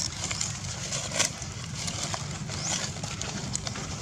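Open-air ambience: a steady low rumble, likely wind on the microphone, with scattered short clicks and a few brief high chirps. The loudest click comes just over a second in.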